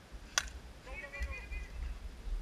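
A yellow plastic wiffleball bat striking a plastic wiffleball once, a single sharp click about a third of a second in, followed by a short shout from a voice. A low rumble of wind on the microphone runs underneath.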